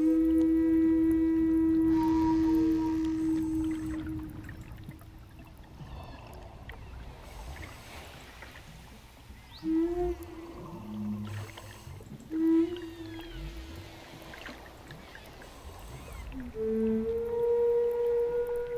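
Native American-style wooden flute playing slow, long-held notes, with a quieter stretch in the middle where only faint sliding tones are heard.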